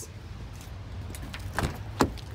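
Rustling and handling noise as a phone is moved with clothing brushing over its microphone, over a low steady hum, with a short knock about one and a half seconds in.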